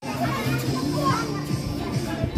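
Several people talking and calling at once, with music playing underneath.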